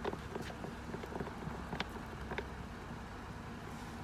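A few light, scattered clicks and taps as the ball of a Carolina Metal Master mirror ball mount is threaded on by hand, over a low steady hum.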